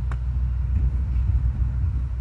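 Steady low rumble of outdoor background noise, with a faint click just after the start.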